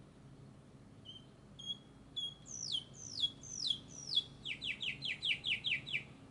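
A songbird singing: a few short high chirps, then a run of notes that each slide down in pitch, then a faster trill of short downward-sliding notes near the end.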